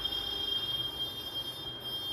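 A steady high-pitched tone with overtones, like an electronic beep or whine, starting suddenly and holding at one pitch.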